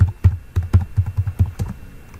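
Computer keyboard typing: a quick run of about a dozen keystrokes, roughly six a second.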